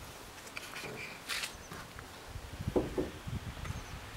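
A cloth sheet pulled off a pickup's tailgate: a short rustle of fabric about a second in, then a few soft low thumps.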